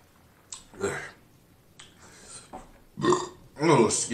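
A man burping several times, a short one about a second in and louder, longer ones near the end.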